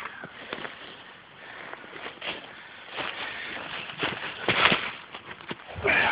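Footsteps and rustling through forest leaf litter and brush, with scattered twig snaps and a few heavy breaths.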